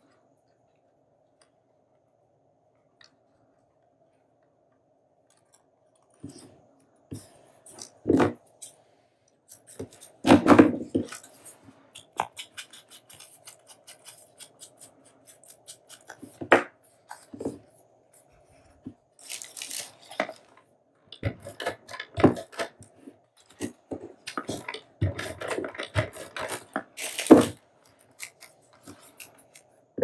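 Hands handling paper craft pieces on a tabletop: irregular paper rustling, small clicks and taps, starting about six seconds in, with a few sharper knocks among them.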